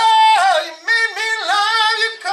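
A man's wordless high falsetto blues holler: a few swooping notes that slide and break between pitches, yodel-like.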